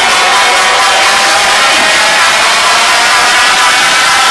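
Loud dance music from a DJ's set through a club sound system, mixed with crowd noise, as a dense, unbroken wash of sound.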